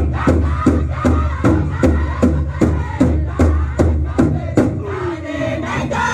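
A steadily beaten drum, about two and a half strikes a second, under a group of voices chanting a song. One voice slides down in pitch near the end.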